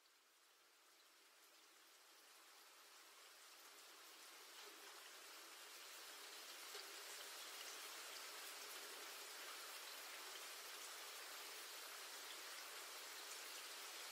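Steady rain, fading in slowly from near silence over the first half and then holding steady, with scattered faint drop ticks through the hiss.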